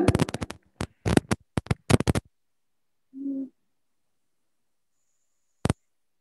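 Choppy, broken-up audio on a video call. A rapid run of sharp clicks and crackles fills the first two seconds, a short low hum comes about three seconds in, and a single click comes near the end. It is typical of a participant's sound cutting in and out over a faulty microphone or earphone connection.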